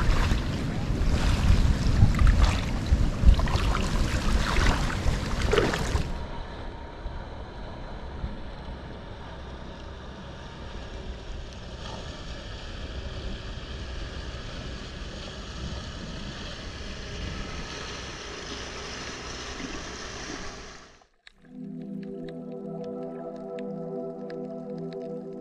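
Wind buffeting the microphone over lapping shallow water for about six seconds, then a quieter steady outdoor hiss with faint background music. About three seconds before the end the sound drops out briefly and soft background music with held notes takes over.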